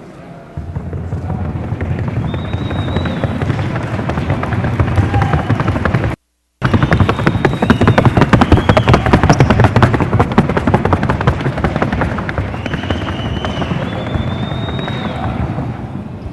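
Colombian Paso Fino horse's hooves on a wooden sounding board, a rapid, even clatter of hoofbeats, with the sound cutting out briefly about six seconds in.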